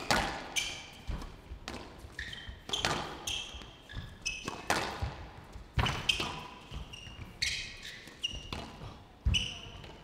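A long squash rally: sharp knocks of the ball off rackets and walls, every second or so at an uneven pace, with short high squeaks of players' shoes on the court floor between shots.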